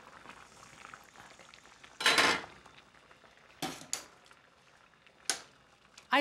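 Pot of green beans at a rolling boil, the water bubbling faintly. About two seconds in there is a short, louder rush of noise, and a few sharp clicks follow later.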